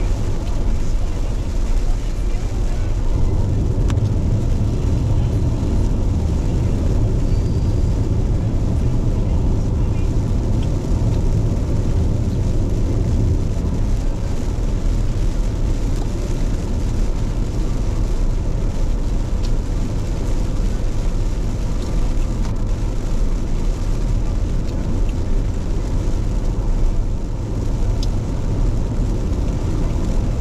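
Steady low rumble of a car's road and engine noise heard from inside the cabin while driving on a rain-wet road.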